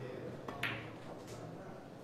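Chinese eight-ball (pool) shot: a faint tap of the cue tip on the cue ball, then, just over half a second in, a sharp click of the cue ball striking an object ball, and a fainter ball-on-ball click a little later.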